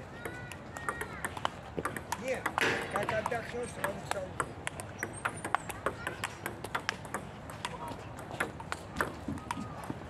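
Table tennis rally: the ball clicking off the paddles and the table in a quick, irregular series of sharp ticks.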